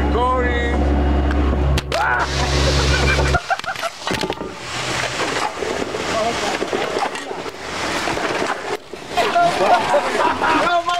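A machine engine runs steadily with people talking over it, then cuts off abruptly about three and a half seconds in. After that, voices continue over a rough, noisy background.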